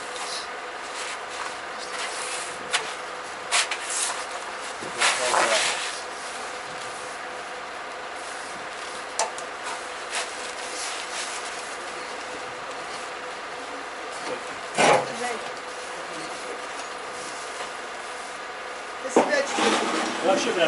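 Rubbing and scraping of a truck's spare wheel being worked by hand into the semi-trailer's underslung spare-wheel carrier, with scattered knocks and one heavier clunk about fifteen seconds in, over a steady background hum.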